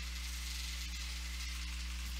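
Background noise of the recording: a steady low hum with faint hiss, and nothing else.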